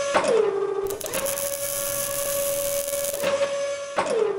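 Sound-effect whine of robot-arm motors holding one steady tone, dropping in pitch just after the start and again at the end. A loud hiss from the arm's tool on the metal plate runs from about one second to three seconds in.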